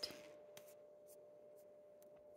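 Near silence: faint room tone with a steady low hum and a few faint light ticks.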